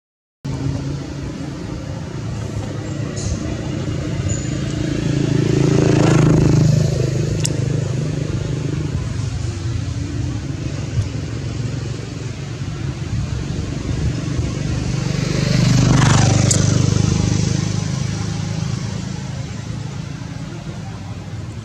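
Motor vehicles passing by, with a steady engine hum that swells and fades twice, about 6 and 16 seconds in. The sound drops out for half a second at the very start.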